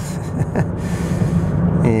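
Steady road and engine rumble inside a car cabin at highway speed, with a man's breathy laughter trailing off in the first second. A voice starts right at the end.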